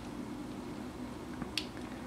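Quiet room tone with a faint low hum, and one short, sharp click about one and a half seconds in.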